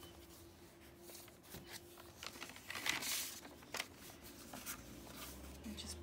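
Paper and card pages of a handmade junk journal rustling and scraping as they are handled and turned, in several short rustles, the loudest about three seconds in.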